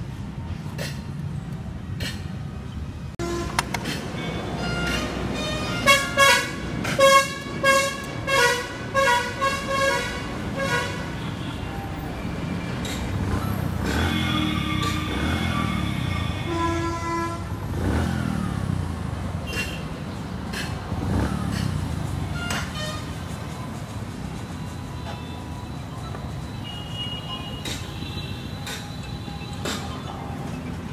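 Street traffic rumbling steadily, with a vehicle horn giving a run of short, repeated toots from about four seconds in to about eleven seconds, and more held horn tones a few seconds later.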